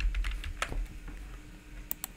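Computer keyboard being typed on: a quick run of keystrokes in the first half-second or so, then a single sharper click near the end.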